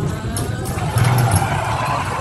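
Steady low rumble of a dark-ride vehicle moving along its track, with the ride's soundtrack faintly under it.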